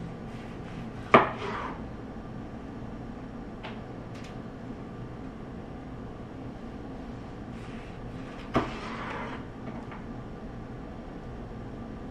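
Chef's knife slicing a roasted onion on a wooden cutting board: two sharp knocks of the blade meeting the board, the loudest about a second in and another a little past two-thirds through with a brief rustle after it, and a couple of faint ticks between.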